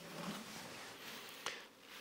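Faint rubbing and rustling of a rag wiping out the inside of an empty motorcycle airbox, with one small click about one and a half seconds in.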